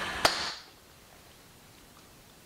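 A single sharp click about a quarter of a second in, over a steady background hum that fades away within the first second, leaving faint room tone.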